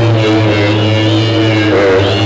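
A beatboxer's deep vocal bass drone, one low note held steadily for about two seconds while the overtones above it shift, amplified through a club PA.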